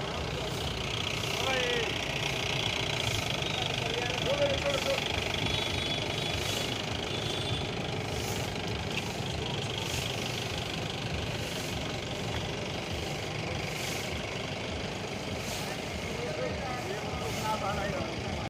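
Long-handled grass brooms swishing across a dusty yard in repeated strokes, every second or so, over a steady background rumble and faint voices.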